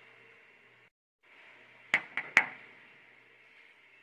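Three sharp clicks in quick succession about two seconds in, the last the loudest, over a faint steady hiss.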